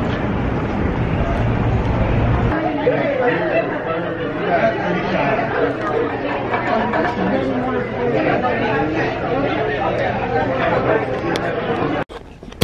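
Indistinct chatter of several people talking at once. For the first couple of seconds a heavy low rumble runs underneath, then cuts off suddenly.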